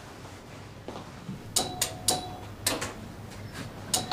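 Knocking on a hotel room door: a quick group of three sharp knocks about a second and a half in, then two more about a second later.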